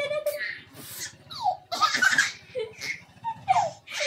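A toddler laughing in repeated short bursts as he is tickled, mixed with an adult's playful voice.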